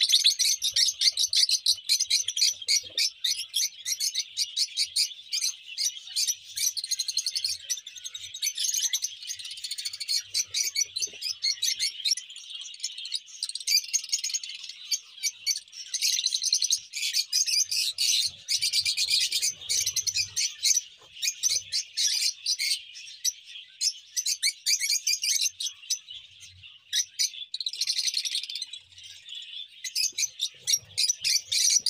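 A flock of peach-faced lovebirds chattering: many rapid, shrill chirps overlapping without a break.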